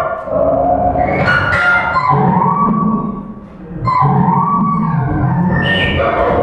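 Live laptop electroacoustic music made in Max/MSP: layered sustained electronic tones that bend and glide in pitch over a low drone. The sound dips briefly a little past the middle, then swells back.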